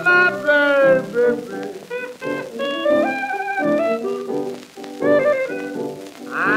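Barrelhouse piano blues record from the 1929–1933 era: solo piano playing a run of notes between verses, with a sung note sliding down in the first second.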